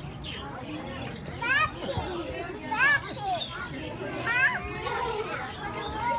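Background chatter of people's voices, broken three times by short, high-pitched squeals that rise and fall in pitch.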